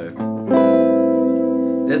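Electric guitar playing an A minor 9th chord at the 5th fret: a low bass note plucked with the thumb, then the upper strings joining about half a second in, the chord left ringing.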